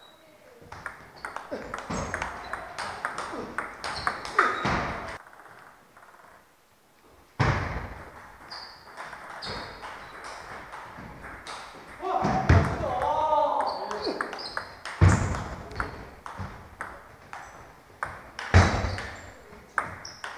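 Table tennis rallies: a plastic ball struck by rubber-faced paddles and bouncing on the table, a quick run of sharp clicks. There is a pause of about two seconds early on, then play resumes. A voice is heard briefly about midway.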